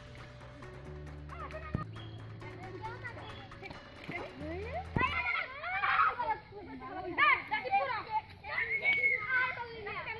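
Children shouting and calling out during a game of ha-du-du (kabaddi) over background music with a low bass line. The shouting starts about halfway through, with one long held call near the end.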